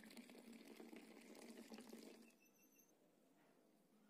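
Faint pouring of milky tea into a glass tumbler, the liquid splashing and frothing in the glass, tailing off about two seconds in to near silence.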